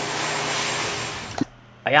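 A steady rush of air from an electric blower or vacuum-type machine that cuts off abruptly with a click about one and a half seconds in.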